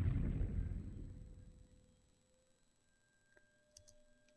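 Sampled short string-ensemble cluster from Symphobia, pitched down two octaves: a low, dark, grainy texture that fades away over about a second and a half. Near silence follows, with a couple of faint clicks near the end.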